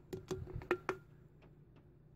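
A scoop of dirt being tipped into a glass drink dispenser full of water: a handful of light clicks and taps in the first second, as the scoop and grit meet the glass and water.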